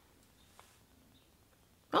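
Near silence: quiet room tone with one faint tick about a third of the way in, then a short spoken exclamation right at the end.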